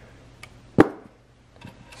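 A single sharp knock a little under a second in, from the stripped-down receipt printer's parts being handled, with a few faint ticks before and after.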